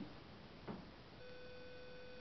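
Two faint short taps, then a faint steady high tone that begins a little past halfway and holds.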